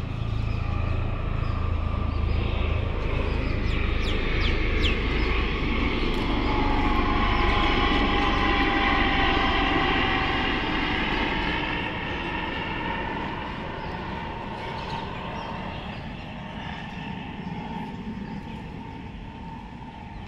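Aircraft passing overhead, growing louder, then fading, its engine tone dropping slowly as it goes by. A few short bird chirps come in about four to five seconds in.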